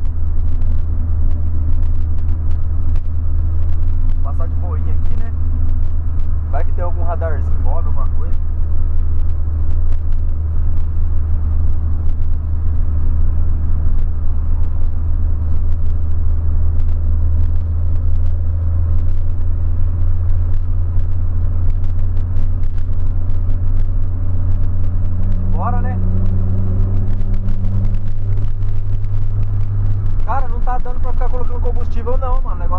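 Steady low drone of a 2008 Volkswagen Polo Sedan being driven, heard from inside the cabin: engine and road rumble. A few brief vocal sounds come from the driver.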